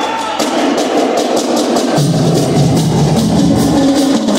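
Marching band drum line playing a steady, rhythmic beat on snare drums. Low bass notes from the band's bass drums and low brass come in about halfway through.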